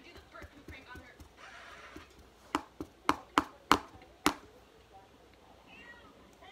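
Six sharp clicks in quick succession, close to the microphone, from a small object being worked in the hands, after a brief soft hiss.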